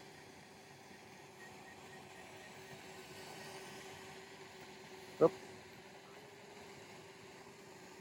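Faint, steady hum of a DJI Spark quadcopter hovering, one even tone over a low hiss.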